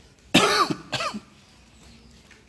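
A man coughing and clearing his throat: two short coughs, the first one louder.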